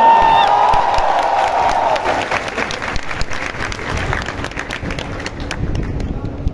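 Large audience applauding, the clapping thinning out toward the end.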